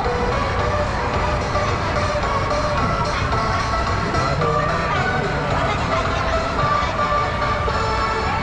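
Music playing from a mall kiddie train ride's speaker, over the continuous low rumble of the ride in motion.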